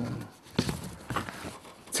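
A few light, irregular clicks and taps of papers and a folder being handled on a table close to a desk microphone, in a pause between speech.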